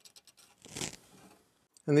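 A pencil scratching a short mark onto a wooden block, after a few light ticks of the block being handled against the metal column.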